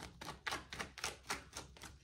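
A tarot deck being shuffled overhand: quick, quiet card taps and slaps, about five a second.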